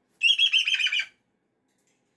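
Moluccan cockatoo giving one short, rapid stuttering call of about ten quick notes, lasting about a second.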